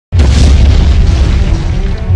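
Explosion sound effect: a sudden loud boom that hits just after the start and carries on as a heavy low rumble, with music under it.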